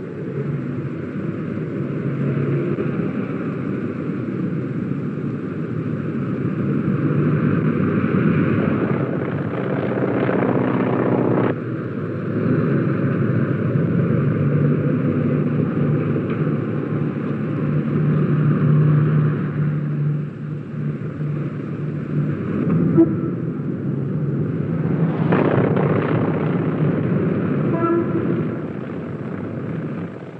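Propeller aircraft engines running steadily, with a low hum and a few rises and falls in level, the loudest swell about three-quarters of the way through.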